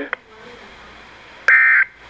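Weather radio hiss after the voice broadcast ends, then about 1.5 s in one short, loud, raspy digital data burst. It is the start of the SAME end-of-message code that closes a NOAA Weather Radio alert.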